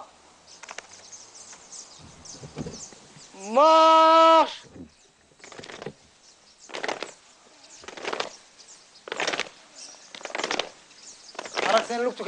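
A drill instructor's long, drawn-out shouted command about four seconds in, rising in pitch and then held. After it, a squad moving in step, with regular noisy beats about once a second from their feet landing together.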